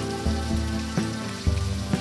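Shrimp sizzling as they fry in oil in a wok, under background music.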